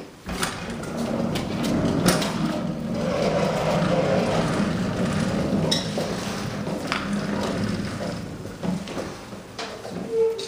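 A hand truck loaded with a heavy safe rolls up an aluminium loading ramp into a box truck. Its wheels make a rough, steady rumble on the metal ramp, with several sharp knocks and clanks along the way.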